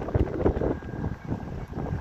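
Wind buffeting the phone's microphone outdoors, a low rumble that rises and falls in uneven gusts.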